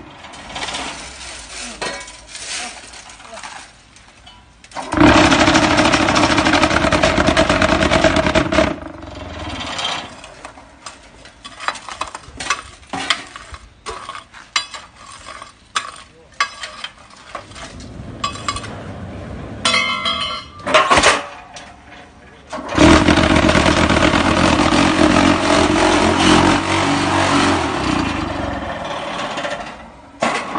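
QT4-40 semi-automatic concrete block machine's vibrating table running in two long steady stretches, the first for about four seconds and the second over the last seven seconds, shaking and compacting concrete mix in the hollow-block mould. In between come scattered metal clanks and knocks from the mould and feeder being worked.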